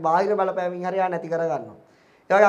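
Speech only: a man talking into a handheld microphone, his voice falling in pitch and trailing off near the end.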